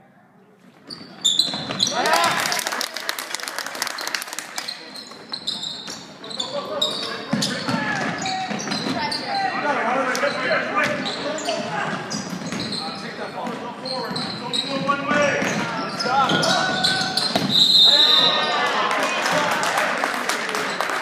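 Live basketball play in a large gym: sneakers squeaking on the hardwood floor, the ball bouncing, and players and onlookers calling out, all echoing. It is fairly quiet at first and turns busy about a second in.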